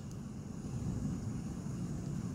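Quiet, steady low rumble of background noise, getting slightly louder about half a second in.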